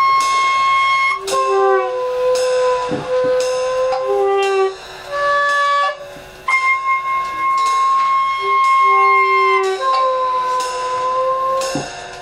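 Free-improvised jazz of long, held woodwind-like notes, two pitched lines overlapping, one high and one lower, each stopping and starting again. Two light knocks fall about three seconds in and near the end.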